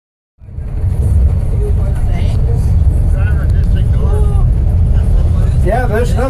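Low steady rumble of a car driving slowly along a road, starting a moment in, with faint voices talking over it.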